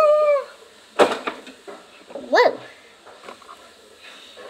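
A child's high voice calling a short held "woo" that falls at its end, then a single knock about a second in, then a short "whoa" rising and falling in pitch.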